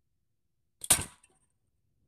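A Bob Fionda custom slingshot fired once: a single sharp snap about a second in that dies away quickly.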